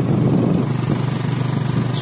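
An engine running steadily with an even low hum.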